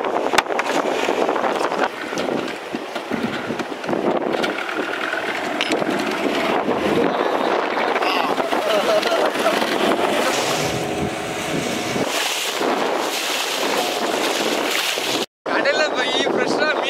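Outboard motor of a small fishing boat running, with wind buffeting the microphone and voices over it.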